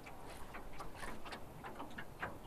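Baitcasting fishing reel ticking softly as its handle is turned, about four even clicks a second.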